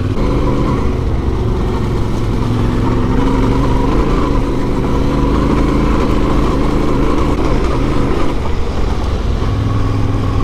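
Adventure motorcycle engine running steadily while riding a dirt trail, with rumble from the ride on the mounted camera. The engine note rises a couple of seconds in and drops back again near the end.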